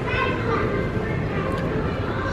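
Busy play-area background: children's voices and chatter, with a short high-pitched child's call right at the start.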